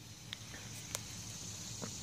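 Quiet outdoor background with a faint steady high hiss and a few faint, scattered clicks; no motor is running.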